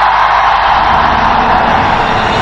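Large audience applauding, a loud, steady sound of many hands clapping.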